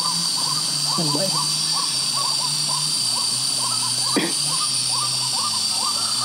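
White-breasted waterhen calling from the grass: a long, even run of short hooting notes that rise and fall, about three a second.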